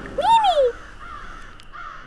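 A single short squawk-like cartoon sound effect, its pitch rising then falling, followed by a faint hiss.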